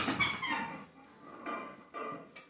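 A man breathing hard and audibly, out of breath after a set of front-rack reverse lunges: a loud breath at the start that fades, and another about one and a half seconds in, with a faint wheezy whistle in the breaths.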